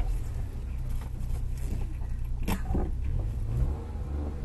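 Suzuki Jimny engine running steadily at low revs, with a single knock about two and a half seconds in.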